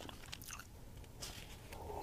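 Faint sips and swallows from a mug, with a few small mouth clicks.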